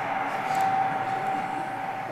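Road vehicles driving, a steady noise with a single high hum that fades out about a second and a half in. It comes from the soundtrack of a news report on a car convoy, heard through a lecture hall's loudspeakers.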